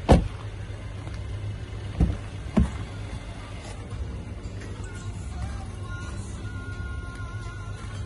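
A Mercedes-Benz A-Class door shutting with a loud thump just after the start, then two more door thumps about half a second apart near two seconds in. Music plays underneath throughout.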